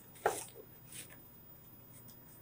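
Tarot cards being picked up and handled: a short soft rustle about a quarter second in, then a faint tap about a second in.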